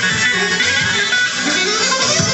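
An ethnic dance band plays live music, with a plucked-string lead over a steady beat.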